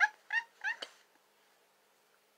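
A woman laughing: a run of short high-pitched bursts, about three a second, that stops about a second in.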